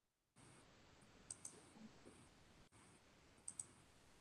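Near silence with faint hiss and two pairs of soft computer mouse clicks, the first pair about a second in and the second pair near the end, as a screen share is being started.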